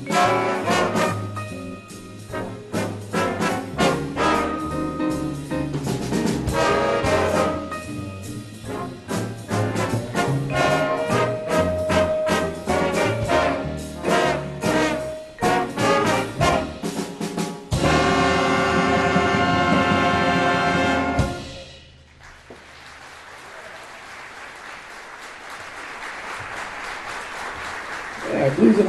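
Jazz big band of brass, saxophones and rhythm section playing a busy passage of short accented hits, then holding a loud final chord that cuts off sharply about three-quarters of the way in. Audience applause follows.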